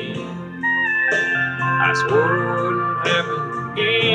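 Country music instrumental fill led by a steel guitar, its notes sliding up and down between sung lines.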